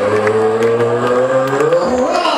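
A male ring announcer's voice over a PA system, drawing out one long syllable for nearly two seconds, with the pitch rising near the end.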